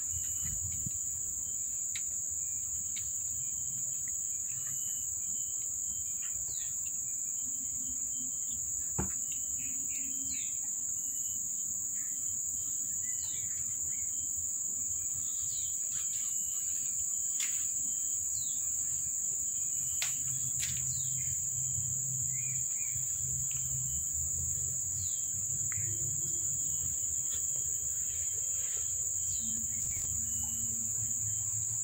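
A steady high-pitched insect chorus drones without a break, with short bird chirps scattered throughout and a single click about nine seconds in.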